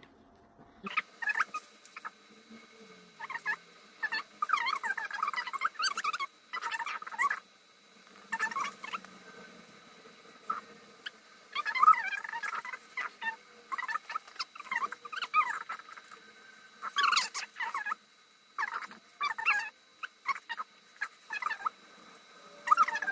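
Repeated short bursts of high-pitched, wavering squeaky whines, roughly one every second or two, with a faint steady high tone underneath.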